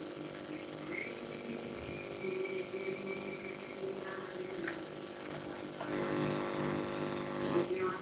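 Faint, indistinct voices in the background, over a steady high-pitched whine, growing a little louder in the last couple of seconds.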